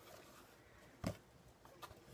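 Quiet room tone broken by a single brief knock about a second in, from a cardboard mailer box being handled and turned over.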